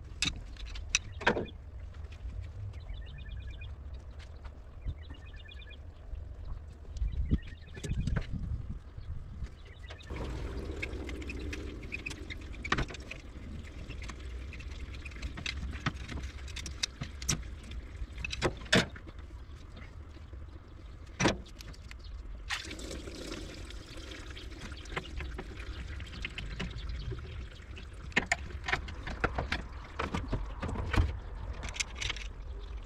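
A wrench and other metal hand tools clicking and clinking against engine parts, in sharp, scattered knocks over a steady low rumble, as the V8 is taken apart.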